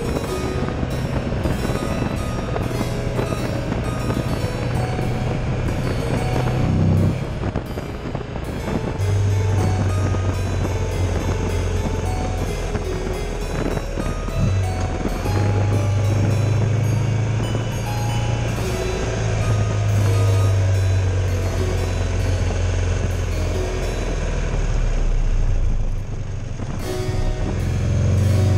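Buell Ulysses V-twin motorcycle engine running at steady road speed with wind rush, under harpsichord background music. The engine note dips briefly twice, then falls away near the end as the throttle is released.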